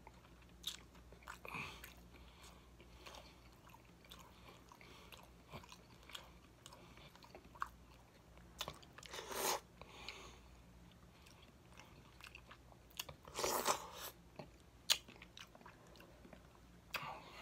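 Close-miked chewing and mouth sounds of a person eating baked chicken: soft crunches, smacks and small wet clicks, with two louder, longer crunchy bursts about nine and thirteen seconds in.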